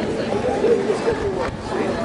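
Several people talking at once, indistinct chatter on a street.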